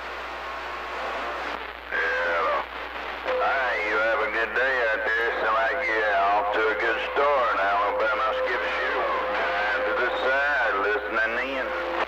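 CB radio receiving a distant station through static: a thin, garbled voice, band-limited and hard to make out. From about three seconds in, a steady whistle tone sits under it.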